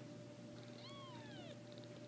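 A newborn Persian kitten mewing once, a short, faint, high cry that falls in pitch.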